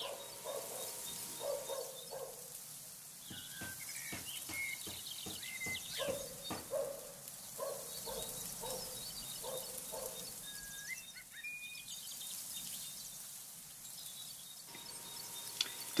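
Quiet handling sounds of insulating tape being pulled off the roll and wrapped around wire connectors: short rasps and scattered clicks. A few short rising bird chirps sound in the background, around four seconds in and again near eleven seconds.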